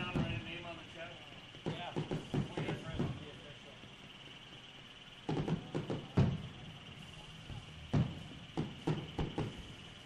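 Faint, intermittent voices heard at a distance, coming in short broken bursts over a faint steady high-pitched tone.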